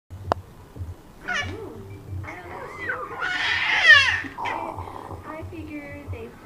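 A young baby of about four months squealing and cooing in high, gliding vocal sounds. The loudest is a long squeal falling in pitch about four seconds in. A sharp click comes just after the start.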